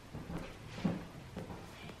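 Quiet room with faint rustling of clothing and a few soft knocks as a person turns around on the spot.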